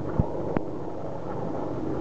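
Sea King military helicopter flying over, heard as a steady low drone with the beat of its rotor, mixed with wind on the microphone. Two short knocks come in the first half-second.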